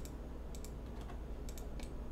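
A few scattered computer keyboard keystrokes, single and in quick pairs, spread through the two seconds over a faint low hum.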